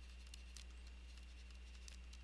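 Faint, irregular light taps and scratches of a stylus writing on a pen tablet, over a steady low electrical hum.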